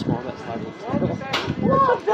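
People talking, their words not made out, with one short sharp click a little over a second in.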